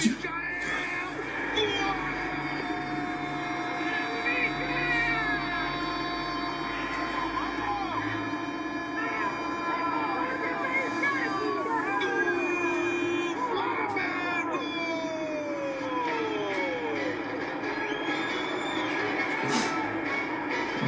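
Football match TV broadcast playing at low level: faint commentary over a steady background of held tones.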